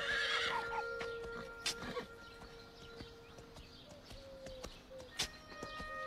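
A horse whinnies in the first second, a brief call falling in pitch, over soft background music with held notes; a few scattered knocks follow.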